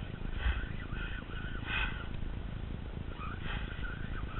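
Spinning fishing reel being cranked while fighting a hooked shark, with short scraping gear noises repeating every second or so over a low rumble of wind on the microphone.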